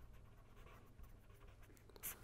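Near silence: a pen faintly scratching on paper as words are written, over a low steady hum.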